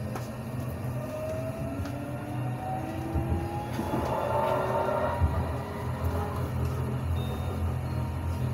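Electric tram running on rails with its traction motors whining, several tones climbing slowly in pitch as it gathers speed over a steady low rumble of the wheels. A short burst of rattling noise comes about four seconds in.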